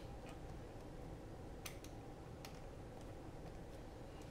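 A few faint, sharp clicks of small plastic parts as fingers try to push a microSD card into the card slot of a FrSky X9 Lite radio transmitter.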